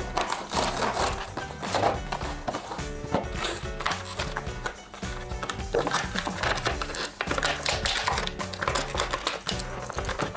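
Background music with a steady, repeating beat. Over it, the clear plastic blister packaging of a boxed doll crinkles and crackles as it is opened and handled.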